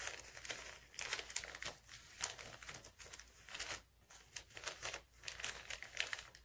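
Advertisement paper crinkling and rustling in irregular spurts as hands fold and press it tight around a small rock.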